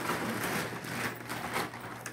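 Rustling and crinkling of a plastic Christmas tree storage bag and the clear plastic wrapping inside as it is pulled open and searched by hand.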